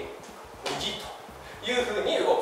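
A man's voice speaking in two short bursts, about half a second in and again near the end.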